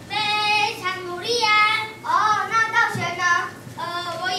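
Children singing in high voices, several short phrases of held notes that slide in pitch.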